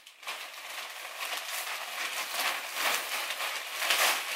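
Thin plastic shopping bag rustling and crinkling as it is handled and clothes are put into it, in a continuous irregular crackle.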